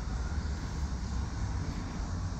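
Steady low rumble with an even hiss over it, a constant machine-like background drone.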